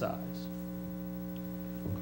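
Steady electrical mains hum in the microphone and audio system: a low drone made of several fixed tones that holds unchanged.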